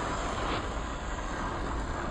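Traxxas TRX-4 1/10-scale RC crawler running over loose rock: a steady drivetrain and tyre noise with a faint crunch about half a second in.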